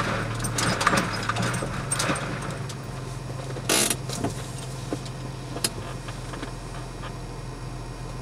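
Inside a vehicle's cabin, crawling slowly over a rocky trail: a steady low engine hum, with clicking and rattling of the body and loose items over the rocks in the first couple of seconds. There is one short, harsh scrape about four seconds in.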